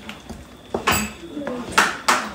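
Wooden spatula stirring a thick gravy in a frying pan, with a few scrapes and sharp knocks against the pan, the loudest just before one second in and again near the end.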